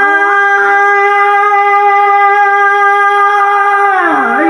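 A male qari's amplified voice holding one long, very steady high note, rich in overtones.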